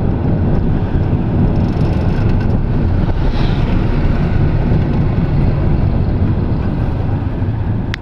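Tuk-tuk engine running steadily under way, a loud continuous low rumble mixed with road noise, heard from the open passenger seat.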